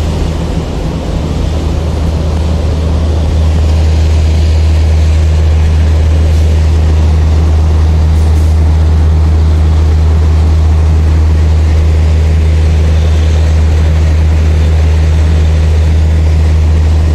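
WDG-class diesel locomotive drawing an express train past a station platform: a steady low engine drone that grows louder about three to four seconds in, then holds steady with the rumble of the coaches rolling by.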